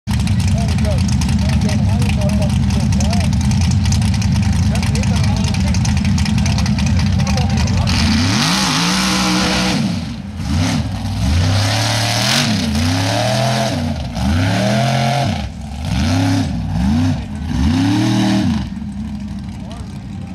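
Mud bog buggy's engine running hard and steady for about eight seconds, then revving up and down in about eight quick swells as it churns through the mud pit, with a hiss of spraying mud and spinning tyres. It drops away near the end.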